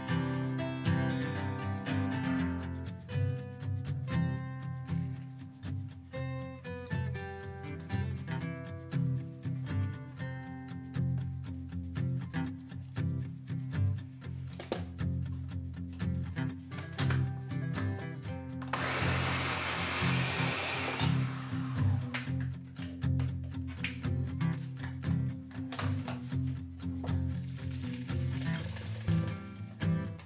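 Background music with a light melody throughout. About two-thirds of the way in, a Ninja countertop blender runs for about two seconds, puréeing roasted tomatoes, peppers and onions.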